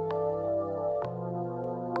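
Slow, sustained synthesizer chords played on a keyboard, the bass note and chord changing about halfway through, with a few short, bright hits over the top.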